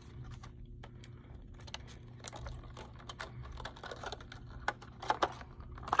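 Packaging being handled as a rigged soft-plastic swimbait is worked out of it: quiet, irregular small clicks and crinkles, a few sharper ones near the end, over a faint steady hum.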